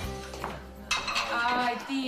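Dishes and cutlery clattering as a kitchen is cleared, starting suddenly about a second in, over the fading end of soft background music.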